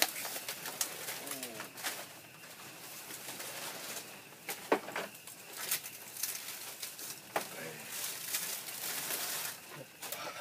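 A dove cooing several times in low, bending calls over a steady hiss, with a few sharp clicks and knocks, the loudest about halfway through.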